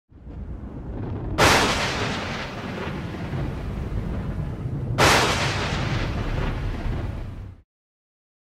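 Logo-intro sound effect: a low rumble that swells, then two heavy cinematic boom hits, one about a second and a half in and one about five seconds in, each with a long decaying tail. It cuts off suddenly near the end.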